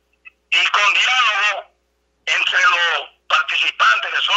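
Speech only: a voice talking over a telephone line, in three short phrases with brief pauses between them.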